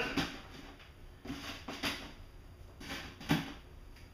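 Plastic net pots being pushed down into holes in a foam-board lid: a few short, soft knocks and taps spread out, the sharpest a little after three seconds in.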